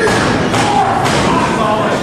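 Bodies thudding onto a wrestling ring's canvas mat, twice about a second apart, over a hall full of crowd voices shouting and chattering.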